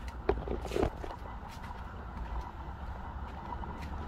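A few light footsteps on pavement over a low, steady outdoor rumble.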